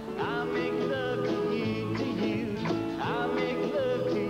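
Acoustic guitar and upright bass playing an upbeat rock and roll song.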